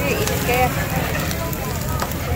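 Meat skewers grilling over a charcoal grill: a steady sizzle with small crackles, under the chatter of voices.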